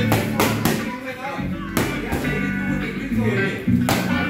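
Background music with guitar, cut by the sharp smacks of boxing gloves hitting focus mitts: a quick run of three punches in the first second, one more a little before two seconds, and one near the end.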